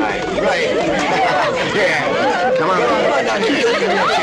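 Group chatter: several women's voices talking over one another in overlapping, excited babble, with no single speaker clear.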